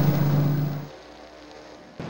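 Tank engine running with a steady low drone that cuts off about a second in, leaving only faint hiss.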